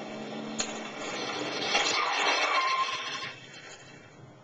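A car engine running, then from about two seconds in a loud scraping noise lasting over a second, fitting the back tires locking up and the car skidding.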